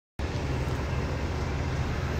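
A steady low engine rumble, like a vehicle idling close by.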